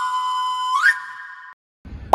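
Short electronic logo jingle: a whistle-like tone held steady, gliding up in pitch a little under a second in, then fading away and stopping about a second and a half in.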